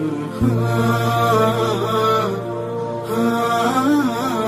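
Background music: a chanted, melodic vocal line over a steady low drone that comes in about half a second in.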